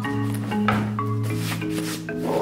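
Background music with a steady bass line, over the rustle and scrape of a fabric backpack being set down and handled on a wooden table, the rustling mostly in the second half.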